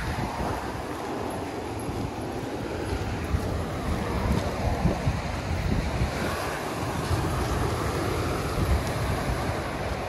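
Ocean surf washing on a beach, a steady rushing noise, with wind buffeting the microphone in low gusty rumbles.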